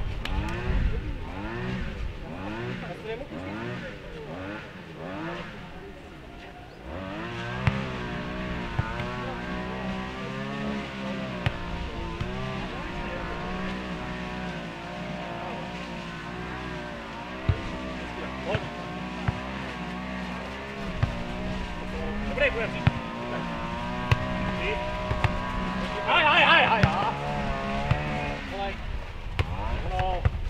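An engine runs throughout, its pitch swinging quickly up and down for the first several seconds, then holding a steadier, slightly wavering drone from about seven seconds in. Several sharp knocks of the ball being kicked or bouncing sound over it at intervals.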